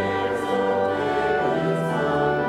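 Church organ playing a hymn in sustained chords that change about every second, with voices singing along.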